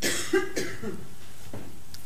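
A brief, faint cough early on, then steady room hiss in a pause of the talk.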